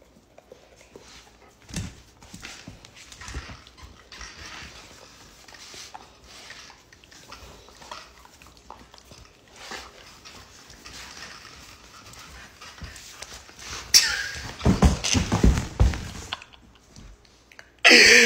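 A Doberman tugging a T-shirt off a seated person's head with its mouth: soft, uneven fabric rustling and the dog's breathing, with a louder burst of commotion about three-quarters of the way through.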